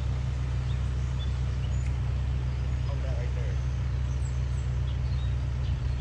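Diesel engine of a Case tracked excavator running steadily, a low even drone.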